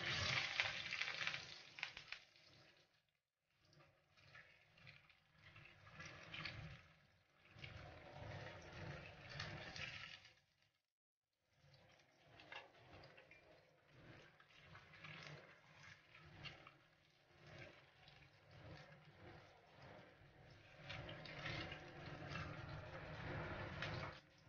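Faint sizzling and crackling of su ji slices shallow-frying in oil in a wok, broken by two short silent gaps.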